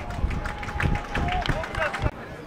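Voices shouting and calling at an outdoor football match, over a steady low rumble on the microphone.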